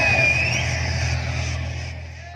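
Recorded dance music played loud over stage loudspeaker stacks. The beat stops and a held bass note with a gliding higher tone fades away as the track ends.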